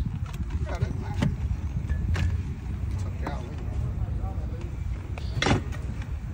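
Bottled drinks and packs being set down in an SUV's cargo area: a few scattered knocks and clinks, the loudest near the end, over a steady low rumble.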